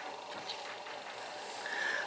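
Faint room tone: a low, steady hiss, with a faint short high tone near the end.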